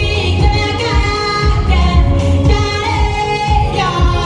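A woman singing through a microphone over amplified backing music with a heavy bass beat.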